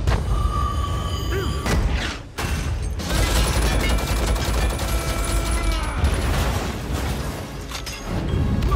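Action-film battle soundtrack: music mixed with explosions and blast effects, dipping briefly about two and a half seconds in before the dense sound returns.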